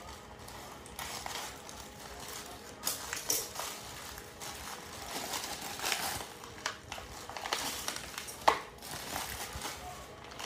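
Black plastic mailer bag crinkling and rustling as it is cut open with scissors and handled, in irregular crackles, with a sharp snap near the end.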